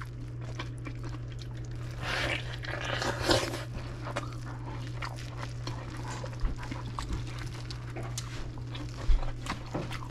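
Small wet, sticky clicks of hands pulling apart a sauce-soaked pot roast sandwich, with mouth sounds of eating, over a steady low hum. About two seconds in comes a breathy hiss lasting a second or so.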